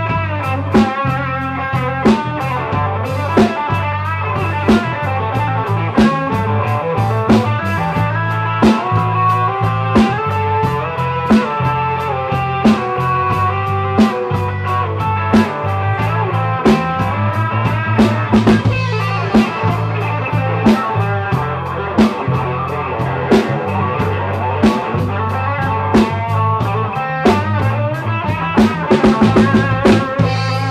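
Live blues-rock trio playing an instrumental passage: electric guitar lead lines over bass and a drum kit keeping a steady beat, with a quick drum fill near the end.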